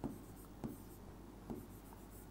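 Marker pen writing on a whiteboard: faint stroke sounds with three light ticks as the tip meets and leaves the board.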